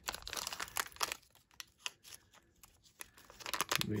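White paper envelope of a trading card pack handled and pulled open by hand: crinkling and rustling for about the first second, then a few scattered sharp crackles, with more rustling near the end.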